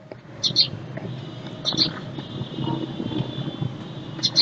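BMW X1 engine idling in Park, heard from inside the cabin as a steady low hum. Twice, a pair of short high chirps sounds over it, from an unseen source.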